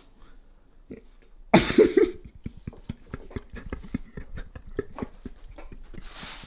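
A crusty seeded bread loaf being picked apart and crumbled by hand, making a run of small irregular crackles several times a second. A short burst of voice comes about one and a half seconds in.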